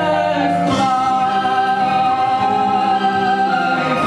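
Music with a group of voices singing; a long held note starts about a second in and changes near the end.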